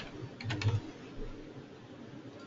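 A few keystrokes on a computer keyboard, clustered about half a second in, as a URL is typed.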